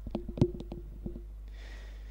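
A quick, irregular run of small clicks and knocks on the commentary microphone, then a faint short hiss, over a steady low electrical hum.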